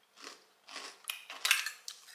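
A handful of short scrapes and light clinks of objects being handled, about five or six over a second and a half.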